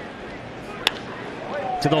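A wooden baseball bat cracks against a pitched ball once, about a second in, as the ball is grounded for a base hit. Under it is the low murmur of a ballpark crowd, which swells near the end.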